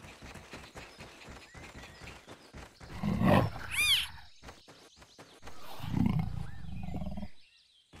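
Cartoon big-cat calls for a clouded leopard mother and cub meeting: a low growl about three seconds in, a high mew right after it, then a longer, steady low rumbling growl near the end. Faint rustling and patter run underneath.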